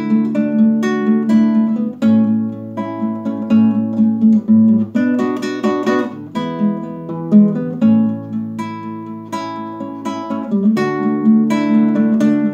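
Nylon-string classical guitar played solo: an instrumental passage of strummed and plucked chords.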